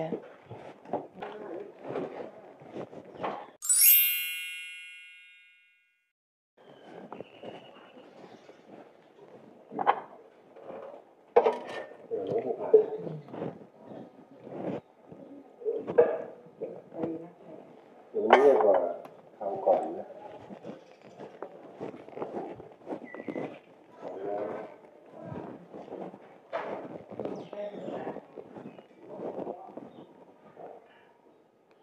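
A single bright bell-like chime rings out about four seconds in and dies away over about two seconds, ending in a moment of dead silence. Before and after it there is indistinct talking.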